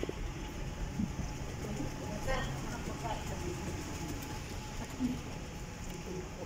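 Steady low rumble of a large airport terminal's background noise, with faint scattered voices and a few soft knocks.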